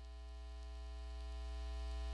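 Steady electrical hum with a buzzy stack of overtones, growing gradually louder.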